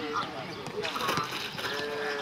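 Men's voices calling and shouting across an open football pitch during a passing drill, with a sharp knock about a second in.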